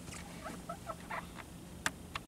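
Faint creaks and handling noises: a few short squeaks through the middle and one sharp click near the end, over a steady low hum.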